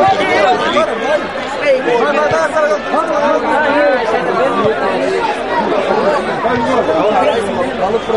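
Several people talking over one another at once, a steady babble of spectators' voices with no single voice standing out.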